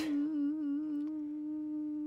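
A single note held steadily as a drone, with a fainter wavering tone above it that fades out. It is a sustained note stuck in the backing-music playback, which the host calls 'stuck'.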